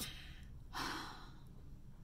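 A woman's soft, breathy sigh about a second in, fading out quickly.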